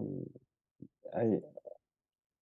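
A man's hesitant speech: a drawn-out 'uh' that falls in pitch and trails off, a pause, then a short 'I,'.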